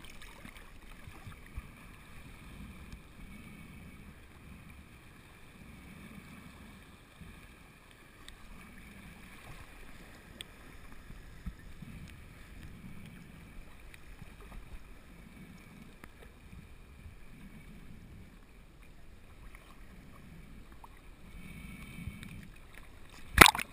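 Faint, muffled water sloshing and lapping around an action camera held at the sea's surface in shallow water, with soft low pulses every second or two.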